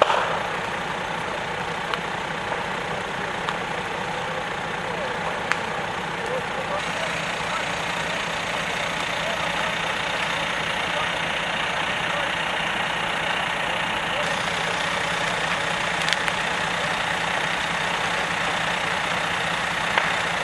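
Fire engine's engine running steadily at idle, a continuous low hum under an even noise. A few short sharp cracks stand out, about two, five and sixteen seconds in.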